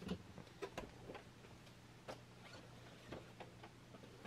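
Faint, irregular light clicks and taps from handling a boxed Funko Pop vinyl figure, heard over a low steady hum.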